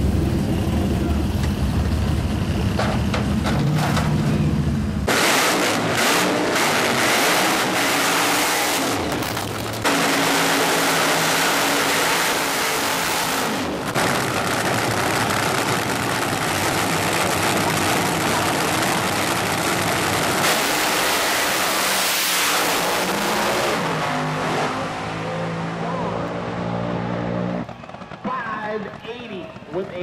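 Supercharged fuel funny car engine running: first with a steady low idle, then, after an abrupt change about five seconds in, loud at full throttle on a drag strip pass. The engine sound drops away near the end.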